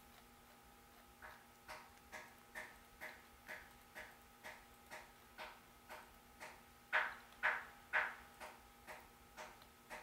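Faint, evenly spaced clicks from a computer as slides are stepped through, about two a second, with three louder clicks about seven to eight seconds in.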